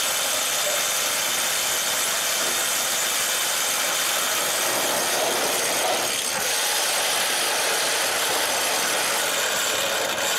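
Steady mechanical running noise from a portable engine generator and the corded handheld power tools the crew is running at the snow fence posts, with road traffic mixed in.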